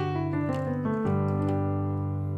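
Piano playing sustained chords in G major. A new chord (G–D–G–B–D–G) is struck about a second in and left to ring.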